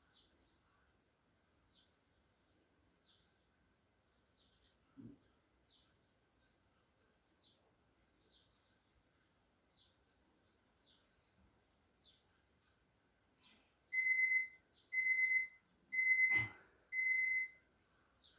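An electronic interval timer beeps four times near the end, a steady high tone about once a second, marking the end of a 30-second exercise. Before that there are only faint short chirps repeating about every second and a half.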